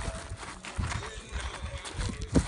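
Footsteps crunching on loose gravel and stones, an uneven series of short crunches, with wind rumbling on the microphone.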